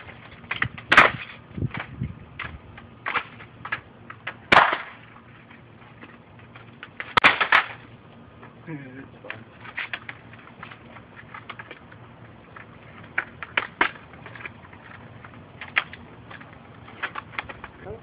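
A laptop being broken apart by hand: a series of sharp plastic cracks and clatters of pieces on concrete, the loudest about a second in, near the middle of the first third, and a cluster a little before halfway, with smaller snaps in between.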